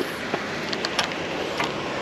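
Steady outdoor background hiss with a few faint clicks around the middle.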